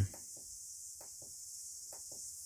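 Several faint, short clicks of a small tactile push button on an XH-M609 battery undervoltage protection module, pressed repeatedly to step its time-delay setting down toward zero. A steady high hiss runs underneath.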